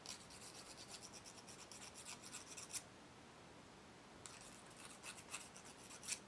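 Fingernails being filed: quick, faint, scratchy strokes, several a second, in a run of nearly three seconds, then a pause, then another run near the end.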